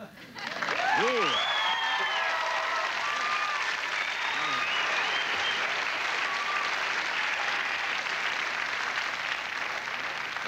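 A studio audience applauding, starting just after a moment of quiet, with a few whoops and cheers in the first few seconds.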